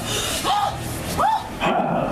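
A person crying out in two short, high yelps about a second apart, each rising and then falling in pitch, over background commotion.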